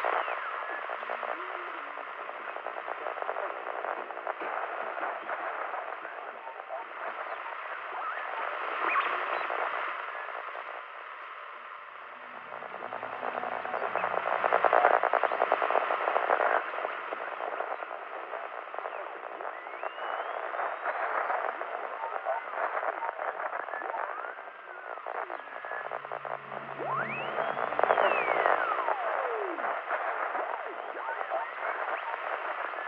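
Old-time radio static hissing and crackling, with whistles gliding up and down as if the dial were being tuned between stations, most of them near the end. Faint, broken snatches of broadcast voices come through the static.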